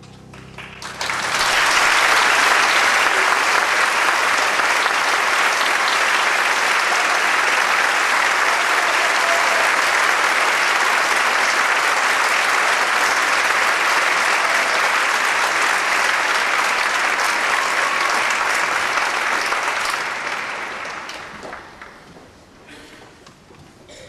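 Large concert-hall audience applauding. It swells up quickly about a second in, holds steady, and dies away near the end.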